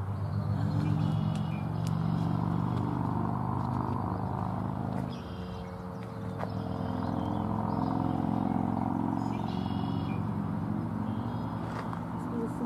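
A motor vehicle's engine running steadily, its hum swelling and easing, with a few faint short high chirps at intervals.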